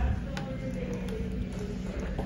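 Inside a Schindler elevator car: a knock at the start, then a sharp button click about half a second in, followed by a faint steady hum for about a second.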